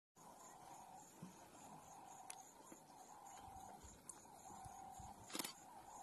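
Near silence: faint outdoor ambience with a faint high chirp repeating about three times a second, and a short burst of noise about five and a half seconds in.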